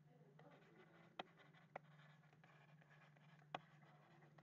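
Near silence with the faint scratching and taps of a stylus writing on a tablet, three brief clicks spread through, over a low steady hum.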